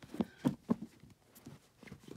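Paperback books being handled and set down, giving a few short soft knocks within the first second, then faint rustling.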